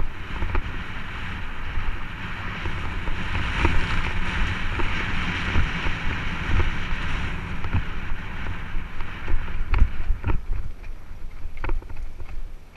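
Wind rushing over the action camera's microphone as a mountain bike rolls down a dirt trail, with tyre rumble and rattling knocks from the bumps. The rush is strongest in the middle, and the knocks come thicker and louder in the last few seconds as the trail gets rougher.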